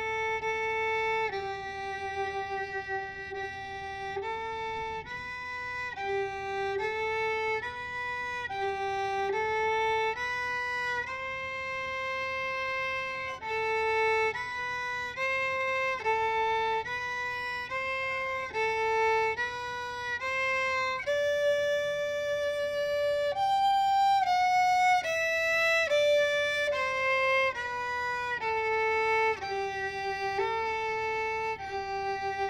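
Solo violin bowed in third position, playing the slow melody of a French folk song one sustained note at a time. The notes change every second or two, with a short falling run of notes about three-quarters of the way through.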